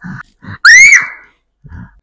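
A young girl's short, shrill shriek, rising and then falling in pitch. It comes as a hair-removal strip is pulled off her forearm.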